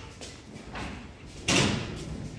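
A single sudden bang about a second and a half in, the loudest sound, dying away over about half a second.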